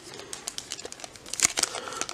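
Foil trading-card packs crinkling as they are handled and squeezed, with light scattered rustles and ticks.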